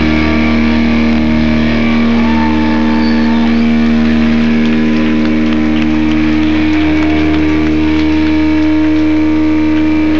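Electric guitar through a loud amp holding a steady drone of sustained notes and feedback, with a constant low hum beneath and no drums, while the effects pedals are worked.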